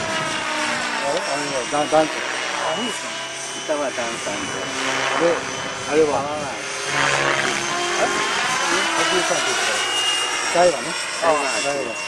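Electric radio-controlled helicopter in flight: the motor and rotor whine with several tones that slide up and down in pitch as it manoeuvres.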